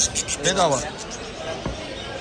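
A man's voice speaking briefly at the start, then a single dull thump about a second and a half in.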